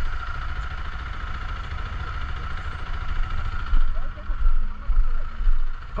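Zontes GK 350's single-cylinder engine idling steadily, with gusts of wind rumbling on the microphone in the second half.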